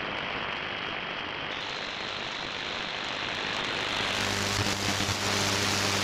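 Shortwave AM static and hiss from an RTL2832 software-defined radio with a Ham It Up upconverter, tuned between broadcast stations around 15 MHz. About four seconds in, a steady low hum joins the hiss.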